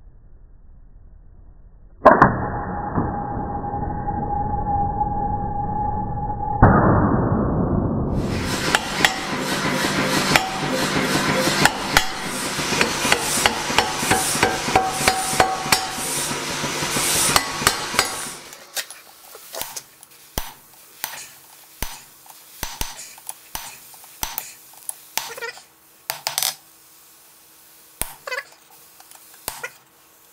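An angle grinder starts suddenly and runs with a steady whine for several seconds. Then a power hammer delivers about ten seconds of rapid, repeated blows on hot steel. It ends with single hammer strikes on a punch over an anvil, about one or two a second, with a faint steady hum behind them.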